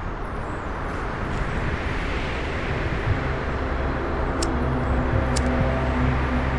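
A car's engine running, heard from inside the cabin: a steady low hum under a wash of noise, fading in and growing louder. Two faint ticks about a second apart come near the end.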